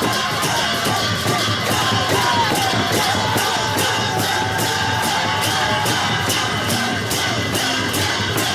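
Two-headed barrel drums (dhol) beaten in a steady rhythm, about three strokes a second, under a crowd cheering and shouting.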